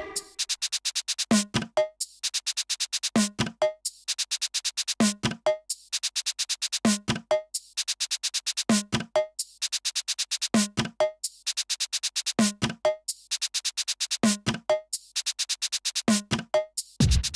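Electronic drum-machine and synth loop played live on a small hand-held synthesizer. A pattern repeats about every two seconds: a fast run of high ticks, then a pair of short low pitched hits in each gap.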